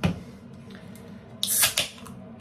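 A sharp click, then about a second and a half in a short, loud hiss of gas as a beer can is opened.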